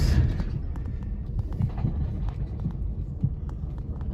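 A car driving over a gravel lot, heard from inside the cabin: a steady low rumble with scattered small clicks and ticks of gravel under the tyres.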